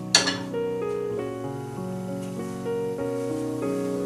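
Background instrumental music of steady, held keyboard-like notes. Just at the start comes a single sharp clank, the metal kadhai being set down on the stove.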